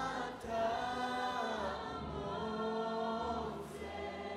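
A worship choir and a lead singer singing together in long held notes that bend slowly in pitch.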